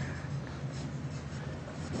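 Quiet room tone in a pause between speech: a steady low hum with faint, scattered rustling.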